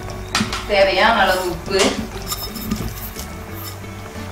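A person speaking, with a few light clinks of steel utensils against a steel pan.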